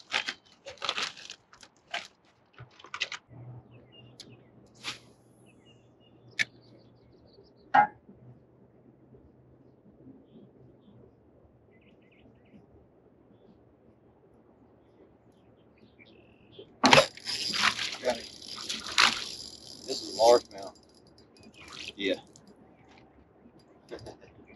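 Fishing from an aluminium jon boat: scattered knocks and clicks in the first few seconds and a faint steady low hum, then, about 17 seconds in, a loud burst of noise lasting a few seconds as a bass is hooked and reeled in to the boat.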